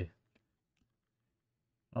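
A few faint, soft clicks of a stack of paper trading cards being handled and flipped through by hand.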